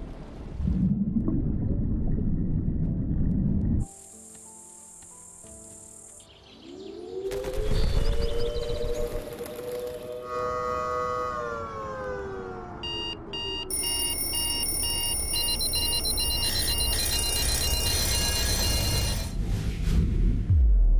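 Documentary sound design over music: a loud rush of noise that cuts off suddenly about four seconds in, then a long gliding tone that rises, holds and slowly falls, followed by a run of steady electronic beeps at several pitches.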